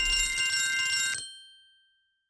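Bell-like chime from a mobile casino game's sound effects as lightning multipliers are revealed: several steady high tones over a fading low rumble. It cuts off suddenly just over a second in, with a brief ring-out into silence.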